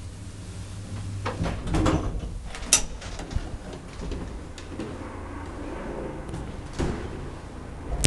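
Unilift traction elevator doors being operated: a low hum fades about a second in, then rattling and knocks with a sharp click a little later, and another knock near the end.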